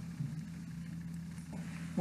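A steady low hum, with faint handling of quilt fabric and batting.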